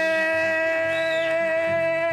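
A voice holding one long, high sung note over acoustic guitar playing, after sliding up into it.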